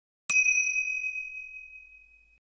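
A single bright chime, the ding of a logo sting, struck about a third of a second in and ringing on as it fades away over about two seconds.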